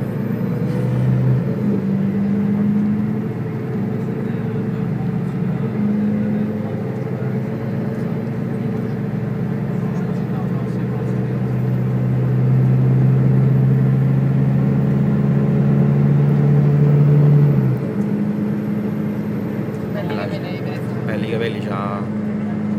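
Coach bus engine running, heard from inside the passenger cabin as a steady low drone whose pitch shifts several times with the gears. It builds in loudness for several seconds and drops suddenly near the end, as the bus changes gear.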